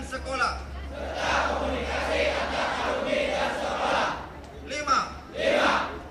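A formation of students shouting together in unison for about three seconds, followed near the end by a short, loud shouted call.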